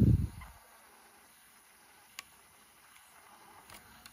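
Mostly quiet, with a low handling rumble at the start and a single sharp plastic click about two seconds in. This is fingers pressing on the running tape transport of a Sony WM-FX45 Walkman to load its new drive belt.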